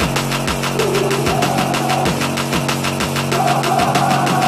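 Background music: a loud, fast track with a steady driving beat.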